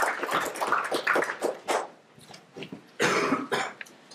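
Audience applause thinning out and dying away over the first two seconds, then a single short cough about three seconds in.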